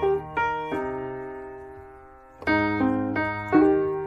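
Piano music: chords struck and left to ring and fade. One chord sustains for nearly two seconds in the middle, then a quicker run of chords follows.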